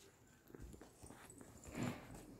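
Quiet room tone with one short breathy noise near the end.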